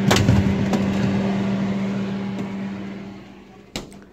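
A knock right at the start, then a steady low hum that fades away over about three seconds, and a short click near the end.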